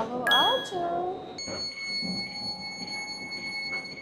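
Door signal on a Caltrain Stadler KISS electric multiple unit at a station stop: a steady electronic tone for about a second, then a higher steady tone held for about three seconds.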